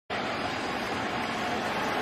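Steady, even hubbub of a large baseball stadium crowd, with no single cheer or strike standing out.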